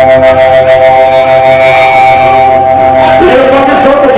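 Hardcore punk band playing live, the amplified guitars holding one sustained droning chord that breaks off about three seconds in. The recording is loud and distorted.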